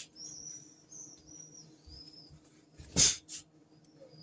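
High, thin chirps, like a small bird's, for the first two seconds, then a sharp smack about three seconds in, followed by a smaller one.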